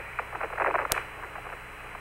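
Radio link hiss in a gap between transmissions, cut off above the voice band, with one sharp click about a second in.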